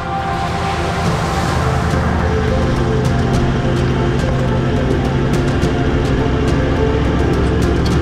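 Background music over a Toyota Land Cruiser 79 Series V8 turbodiesel driving. There is a steady low rumble with a wash of tyre splash through shallow water at the start, then tyres on a gravel road with many small stone clicks.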